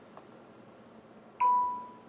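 A short electronic alert chime from a computer or phone: one clear tone that starts sharply about one and a half seconds in and fades over about half a second. Just before it there is a faint tap of a stylus on the touchscreen.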